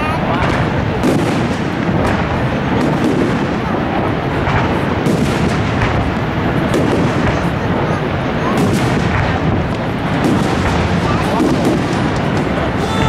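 Fireworks display: aerial shells bursting one after another in a dense, continuous barrage of bangs, heard from a distance.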